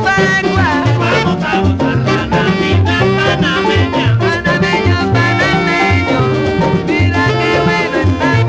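Panamanian guaracha played by a dance orchestra: a lead melody with sliding notes over a repeating bass line and percussion, with no vocal line in this stretch.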